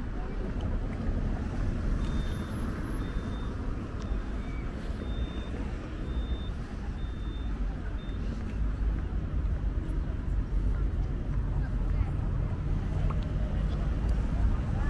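Outdoor town-square ambience: a steady low rumble, with a run of faint, evenly spaced high electronic beeps from about two to eight seconds in.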